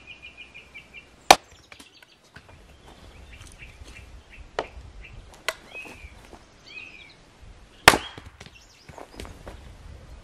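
A splitting axe strikes a log on a wooden chopping block twice, with two sharp blows about six and a half seconds apart. The second blow splits the log. A few lighter knocks fall between the blows, and birds chirp throughout.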